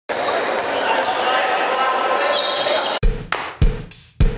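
Basketball gym ambience: crowd chatter in a large hall with a few short high squeaks and clicks, like sneakers on the court. About three seconds in it cuts abruptly to music with a steady bass-drum beat.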